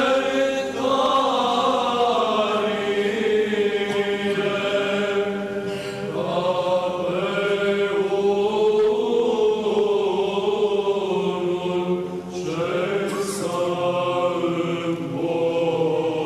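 Unaccompanied voices chanting an Orthodox liturgical hymn in long, held phrases, with brief pauses between phrases about six and twelve seconds in.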